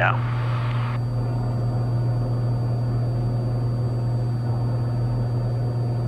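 Steady, even drone of a Cessna 182's engine and propeller heard in the cabin in flight, with a short hiss during the first second.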